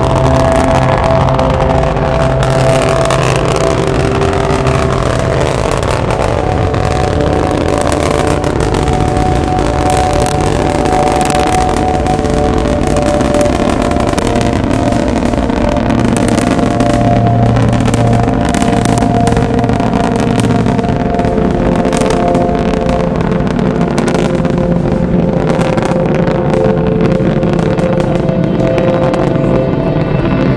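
Antares rocket's first-stage engines heard from miles away during liftoff and ascent: a loud, continuous rumbling roar with crackle running through it.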